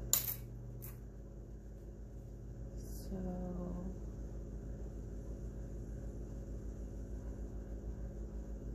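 A few sharp light clicks in the first second as a tape measure is handled against the tabletop, then a brief hummed voice about three seconds in, over a steady low electrical hum.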